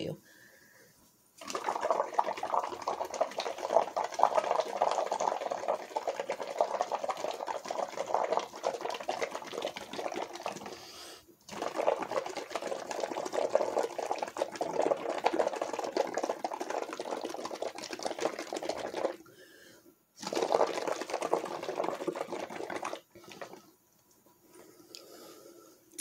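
Air blown through a straw into a cup of dish-soap water, a fast crackling bubbling as foam builds up. It comes in three long blows, the first about ten seconds, then about seven, then about three, with short breaks between.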